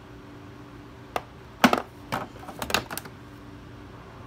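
Hand tools being handled in a toolbox's plywood tool holder: a few short clicks and knocks of metal and plastic tools against each other and the holder, scattered through the middle seconds.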